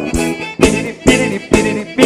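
Live forró band playing a short instrumental passage between sung lines: a melodic instrument line over a steady beat of about two strikes a second.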